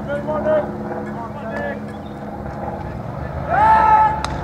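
Players and spectators calling out at a baseball game, with one loud drawn-out shout near the end, over a steady low hum.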